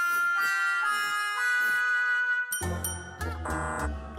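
Cartoon magic-wand sound effect: a sparkling shimmer of sustained chiming, bell-like tones while the wand draws. About two and a half seconds in it gives way suddenly to a lower, wavering 'wrong try' sound with a deep hum, marking a failed attempt.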